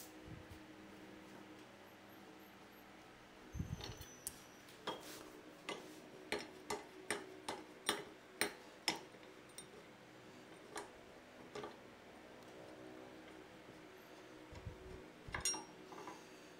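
Hand-tool work on a motorcycle: a run of sharp metallic clicks and light knocks, about two a second, starting a few seconds in and thinning out after the middle, over the faint steady hum of a fan.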